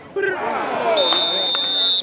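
A referee's whistle blown in one steady, high-pitched blast starting about halfway through, over shouting voices from the sideline.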